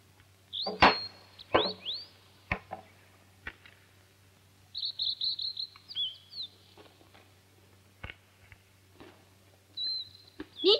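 Small birds chirping: quick rising chirps in the first two seconds, a rapid trill around the middle, and one more chirp near the end. A few sharp knocks are mixed in, and the loudest comes about a second in.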